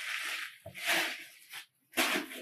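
Tissue paper rustling and crinkling in a cardboard box as hands dig through it, in two stretches about half a second apart.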